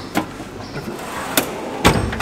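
Steel drawers of a Mac Tools roll cabinet sliding shut and open, with the hand tools inside rattling. There are several sharp knocks, and the loudest one near the end is a drawer banging home.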